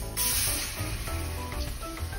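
Seasoned water poured into a skillet of hot, dark-browned flour, sizzling as it hits the pan; the sizzle starts just as the pour begins.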